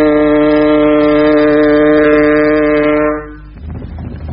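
One long, loud blast of a low horn holding a single steady pitch, dying away about three seconds in.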